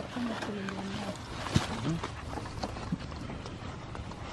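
Apples knocking against each other and against the bin as hands sort through them, a few scattered knocks with the strongest about a second and a half in. Faint voices in the background.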